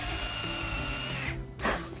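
Cordless drill running steadily with an 8 mm bit boring a dowel hole into a Tasmanian oak beam; it cuts off about a second and a half in.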